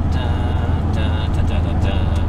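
Steady low drone of engine and road noise inside a Ford Transit van's cabin at motorway speed.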